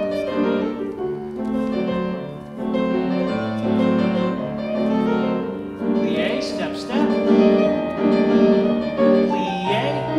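Grand piano played live as ballet class accompaniment, a flowing run of held chords and melody with no break.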